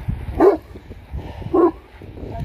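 A dog barking twice, two short barks about a second apart.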